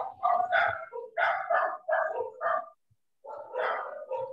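A dog barking in a quick run of short barks over about the first two and a half seconds, then a pause and one more near the end, heard through a participant's open microphone on a video call.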